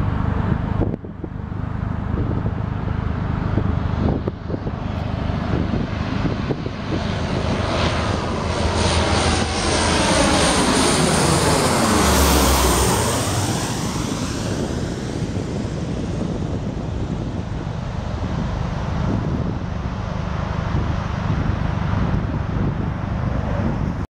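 Lockheed C-130 Hercules four-engine turboprop passing low directly overhead on landing approach, its engine and propeller sound swelling to loudest as it passes about halfway through, then trailing off as it moves on toward the runway.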